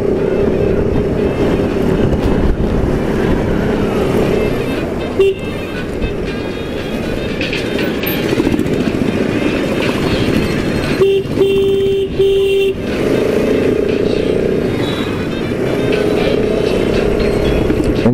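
Motorcycle engine running with wind and road noise while riding through slow town traffic. A horn beeps once about five seconds in and three times in quick succession around eleven to twelve seconds in.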